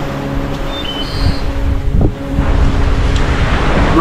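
Wind rumbling on the microphone and surf washing on the beach, growing heavier about halfway through, with a steady low drone held underneath.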